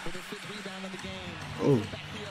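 Basketball broadcast audio: a ball dribbled on a hardwood court under a commentator's voice, with a man's short "Oh" near the end.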